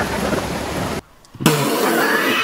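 Fast mountain stream rushing over boulders below a waterfall, a steady roar of water that cuts off abruptly about a second in. After a brief near-silence, a different noisy sound starts suddenly.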